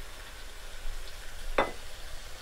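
Chicken curry sizzling as it fries in a wok, a wooden spoon stirring through it, with a brief knock about one and a half seconds in.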